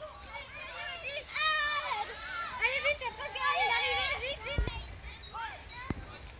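Several children's high-pitched voices calling out and chattering, loudest through the middle. Near the end there is a single dull low thump.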